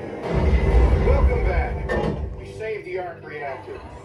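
Simulator-ride soundtrack effects: a deep rumble swells for under two seconds and ends in a sharp metallic clank, followed by a voice.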